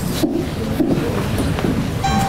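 A CD scratched on both sides being played back, giving a steady, noisy sound. The disc keeps playing despite the scratches.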